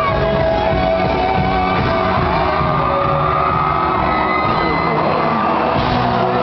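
Rock band playing loud live in a concert hall, with a male lead singer's held and gliding vocal lines over the band and the crowd shouting and cheering.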